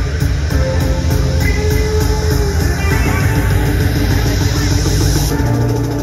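Saxophone played live over a loud, bass-heavy rock/electronic backing track, holding long melodic notes.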